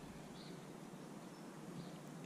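Quiet outdoor background hiss with two faint, high bird chirps, one early and one near the end.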